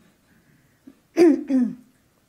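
A woman clears her throat twice in quick succession, about a second in.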